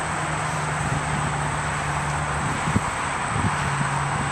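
Steady road-traffic noise, with a low, even engine hum running underneath.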